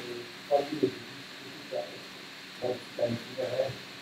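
Faint, off-microphone voice speaking in short broken phrases over steady room hiss.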